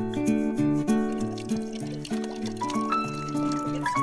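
Background music: a melody of held notes, changing every fraction of a second, over a moving bass line.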